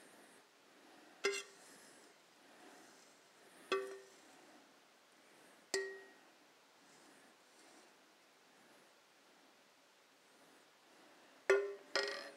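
A metal spoon scraping dry furikake out of a stainless steel saucepan into a bowl, with four sharp ringing clinks as the spoon knocks against the pan.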